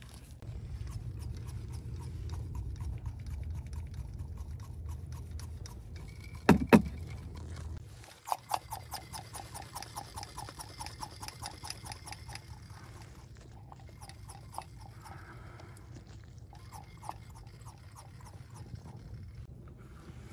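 A rubber sway-bar bushing, slick with silicone paste, being squeezed and worked onto the steel bar over a low steady hum, with a loud sharp squeak or snap about six and a half seconds in. After that, during front brake bleeding, comes a quick run of small clicks for about four seconds, then sparser ones.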